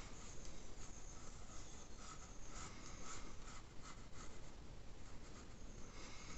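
Pencil sketching on watercolour paper: a string of faint, short scratchy strokes as the graphite is drawn across the paper.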